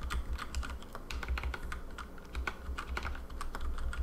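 Typing on a computer keyboard: a quick, irregular run of key clicks over a low steady hum.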